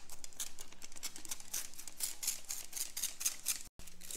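Plastic trigger spray bottle squirting water in rapid, repeated pumps, several short hissing sprays a second, misting potting soil.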